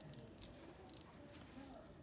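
Near silence with a few faint handling clicks and rustles from a plastic lip gloss tube whose cap won't twist open in oily hands.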